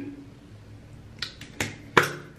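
Hands handling an aerosol can of lace adhesive spray: a few light clicks a little past the middle, then a sharper, louder click at the very end. No spray hiss is heard.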